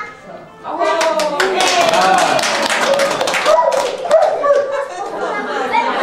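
A small group clapping, starting about a second in and thinning after a few seconds, with voices calling out over the applause.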